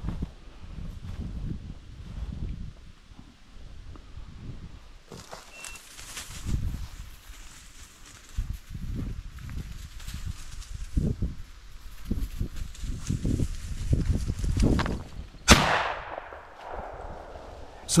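Footsteps moving through brush and dry leaves, then a single shotgun shot about three-quarters of the way in, the loudest sound here, with its report trailing off afterwards.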